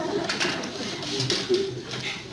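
Laughter in a studio audience, rising and falling in short waves.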